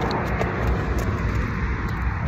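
Steady rumble of road traffic, with a few faint clicks in the first second.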